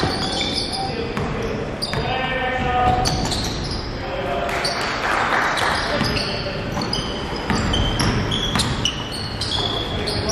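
Live sound of an indoor basketball game on a hardwood gym floor: sneakers squeak in short, high chirps again and again, a ball is dribbled, and indistinct players' voices echo around the large hall.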